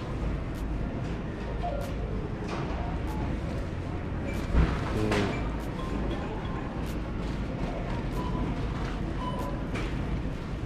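Big-box store ambience: distant voices and background music over a steady low hum, with scattered small clicks and one sharp knock about halfway through.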